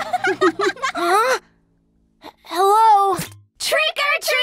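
Cartoon character voices making wordless sounds: short broken syllables, then a pause, then one long drawn-out cry whose pitch rises and falls, and a short vocal sound near the end.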